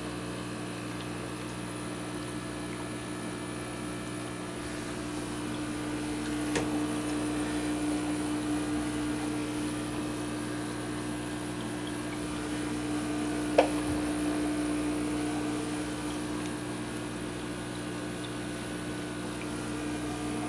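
Steady hum of an aquarium pump with faint water noise. Twice, at about six and a half seconds and more sharply at about thirteen and a half, a short knock as the smallmouth bass's mouth and nose strike the aquarium glass while it snaps up goldfish.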